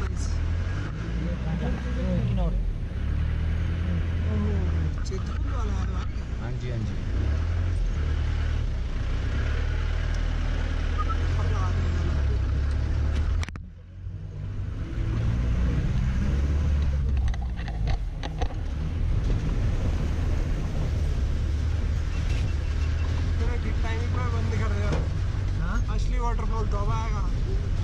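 Inside the cabin of a Tata Sumo driving a rough unpaved mountain road: a steady, loud, low engine and road rumble, with voices talking under it. The sound drops out briefly about halfway through.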